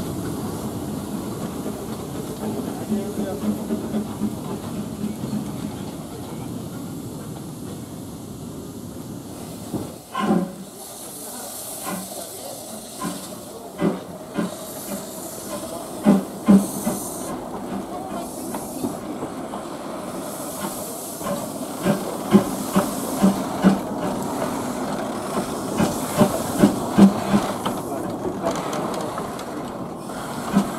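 Narrow-gauge steam tank locomotives moving slowly through a station, with steam hissing. A steady rumble gives way, about ten seconds in, to a long irregular run of sharp clanks and clicks.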